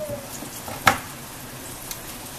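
Diced onion and tomato sizzling steadily in a little oil in a frying pan. About a second in comes a single sharp knock: a knife cutting through potato onto a wooden cutting board.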